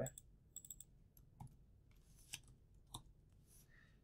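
Faint, scattered clicks of a computer keyboard and mouse: a few quick taps, then single keystrokes spaced about a second apart, with near silence in between.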